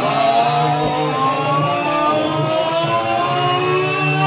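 Loud live band music: sustained notes slowly gliding upward in pitch over a pulsing bass line.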